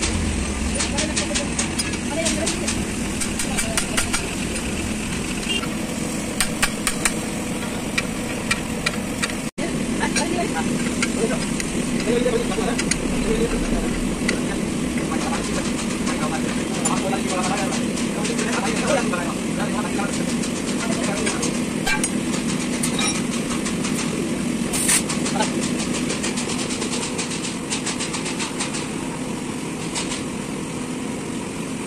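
Steady mechanical rumble of running machinery, with light metallic clicks and taps of steel tools working on a truck clutch pressure plate held in a screw spring compressor. The clicks come thickest in the first third.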